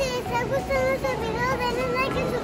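Children's voices, indistinct and without clear words, chattering and calling out with a wavering pitch.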